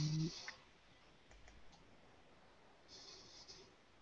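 A brief low voice sound at the very start, then a few faint scattered clicks and a soft rustle near the end, picked up by a webcam call microphone.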